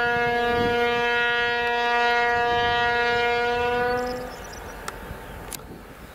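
M62M diesel locomotive's horn sounding one long, steady note that cuts off about four seconds in, leaving the fainter low noise of the approaching train.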